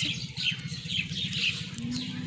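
Small birds chirping repeatedly, with a steady low hum underneath.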